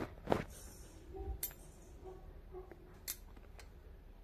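A steel spoon stirring thick suji halwa in an iron kadhai, clinking lightly against the pan three or four times.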